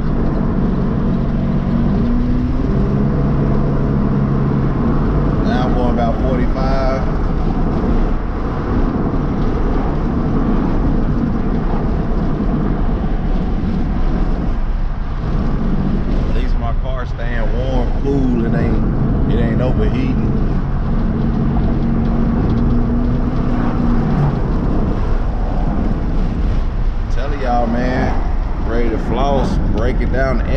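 Car driving at about 40 mph, heard from inside the cabin: a steady engine drone with road and wind noise.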